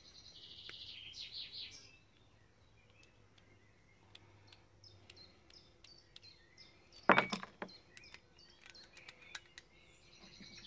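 Small metallic clicks as a hex key unscrews the CO2 capsule holder in the grip of a CO2 blowback airsoft Luger P08 pistol, with one sharp knock about seven seconds in. Birds chirp in the background, most in the first two seconds.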